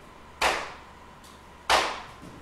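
Two sharp knocks, each dying away with a short echo, about 1.3 seconds apart, over a faint steady high hum.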